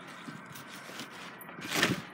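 Faint rustling and movement of a boy doing a flip, with a short louder burst of noise near the end.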